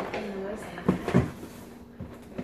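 Two short knocks about a third of a second apart, with some handling noise, as cardboard cereal boxes are moved about at the kitchen cabinets.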